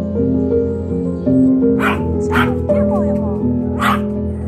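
A small dog barking three times, short sharp barks about two seconds in, half a second later, and again near the end, over steady background music.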